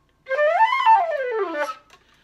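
Silver concert flute playing a glissando: a quick run of notes gliding up and then back down, ending low.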